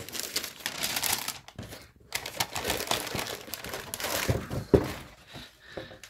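Tissue paper in a shoe box crinkling and rustling as it is folded back and the shoe is lifted out. The rustling comes in irregular spells with a short pause about two seconds in. There is one sharper knock about three-quarters of the way through.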